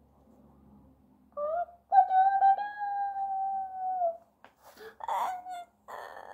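A young girl's voice giving a short high note, then a long high held note of about two seconds that sags at the end, and a shorter call about five seconds in, as she acts out waking up with a stretch and a wide-open-mouthed yawn.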